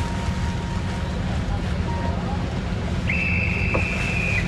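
Steady low rumble of wind and boat engine noise on open water. Near the end a high whistle sounds, one steady note held for over a second.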